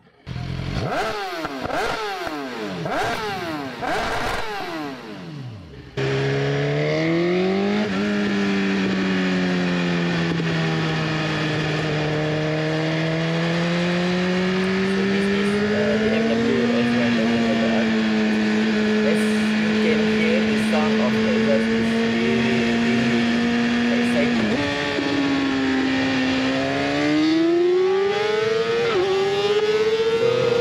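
BMW S1000RR's 999 cc inline-four with an Akrapovič exhaust, revved several times at a standstill, the pitch sweeping up and down. About six seconds in the sound changes abruptly to the bike heard onboard accelerating, the engine note rising and falling with speed over wind noise.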